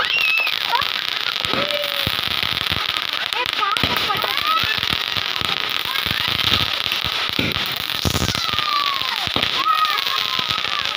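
Fireworks going off: a continuous crackle of sparks and many sharp pops from rockets and firecrackers, with voices calling out over them now and then.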